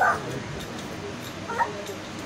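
Two short, high-pitched yelps, one right at the start and a second about one and a half seconds in, over faint background murmur.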